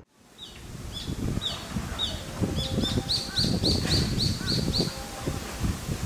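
A small bird chirping: short repeated notes, spaced out at first, then a quick even run of about seven notes near the middle, over a low, uneven rumble.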